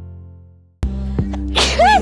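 The tail of a guitar chord fades out, a new music bed starts abruptly about a second in, and near the end a woman sneezes once, sick with a cold.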